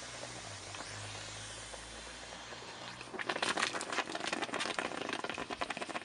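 Caustic soda solution reacting with an aluminium seat post inside a steel bike frame's seat tube: a hiss, then a dense, irregular fizzing crackle from about three seconds in, as the aluminium dissolves and gives off hydrogen bubbles. A low hum under the hiss fades out just before the crackling starts.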